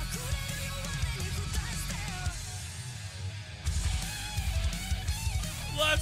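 Hard-rock song playing: a female lead vocal over distorted electric guitars, bass and drums. About two and a half seconds in, the drums and bass drop out for about a second, then the full band crashes back in.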